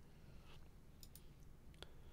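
Near silence, with a few faint computer mouse clicks; the clearest comes near the end.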